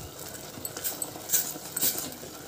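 Steel ladle stirring a thick tomato and spice mixture in a stainless steel pot, with three scraping strokes about half a second apart in the second half, over a faint sizzle of the mixture frying.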